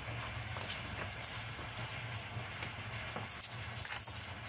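H2O Mop X5 steamer running, a steady low hum under a hiss, with a patter of small crackles and ticks as old floor tile is scraped up from steam-softened, sticky glue.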